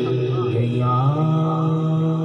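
Male voice singing a Punjabi devotional kalam: a brief wavering ornament right at the start, then a long held note.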